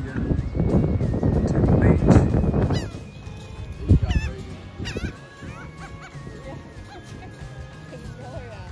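Wind buffets the microphone for the first few seconds. After that, several short swooping gull calls are heard over quiet background music with held notes.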